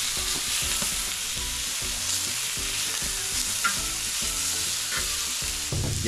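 Pork belly sizzling on a hot cast-iron cauldron-lid griddle (sotttukkeong): a steady hiss of frying fat, with a few light clicks.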